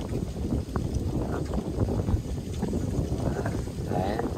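Wind buffeting the microphone: a low, uneven noise.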